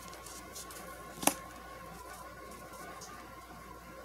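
Tarot cards handled and drawn from the deck: faint rustling and ticking, with one sharp click about a second in.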